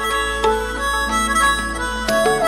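Background music: a slow melody of held notes over a low steady drone.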